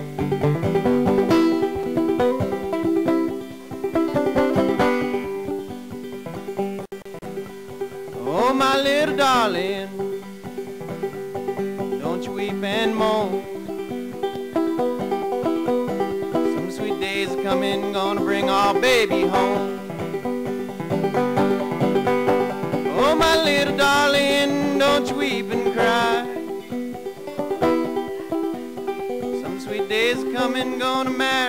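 Banjo played solo in an old-time style, a steady picked pattern over a ringing drone note. A few gliding, wavering wordless vocal phrases come in over it at intervals.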